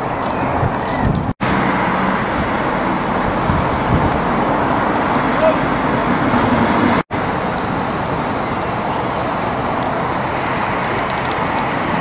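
Steady rumble of motor and traffic noise, broken twice by a sudden brief dropout.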